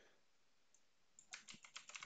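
Computer keyboard being typed on: a quick run of about eight faint keystrokes in the second half, after a near-silent first second.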